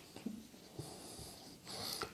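Faint, mostly quiet pause with a soft hiss of a man's breathing that swells near the end, just before he speaks again.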